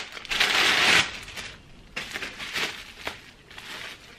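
Bubble-wrap packaging bag crinkling and rustling as it is handled, loudest in a burst during the first second, then quieter irregular crackles.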